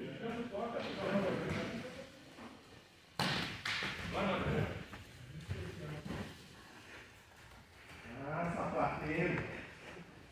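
Indistinct voices echoing in a large hall, with a sudden thump about three seconds in.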